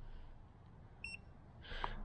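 Hiboy electric scooter's handlebar display giving one short, high electronic beep about a second in, acknowledging the button press that switches on the headlight.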